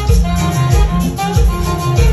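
Live amplified band playing Latin dance music, with electric guitars over a steady bass beat about twice a second.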